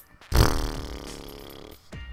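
A man's drawn-out, low wordless vocal sound of hesitation, starting abruptly about a third of a second in and fading over a second and a half.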